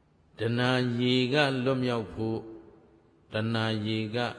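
A monk's male voice chanting Pali in a level, drawn-out intonation: one long phrase of about a second and a half, a pause, then a second phrase near the end.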